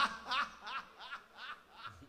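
A man laughing loudly, a string of short ha-ha bursts about three a second that grow fainter.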